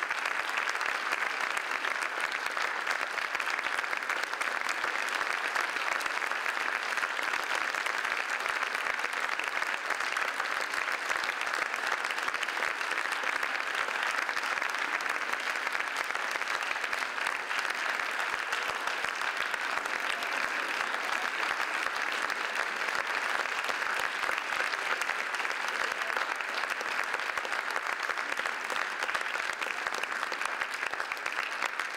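Theatre audience applauding steadily: many hands clapping in an even, unbroken patter.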